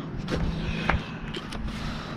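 Footsteps in slide sandals on asphalt, a few light slaps about half a second apart, over a steady low hum.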